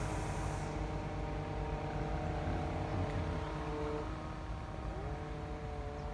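A motor running steadily with a humming pitch that drops about four seconds in and rises again a second later.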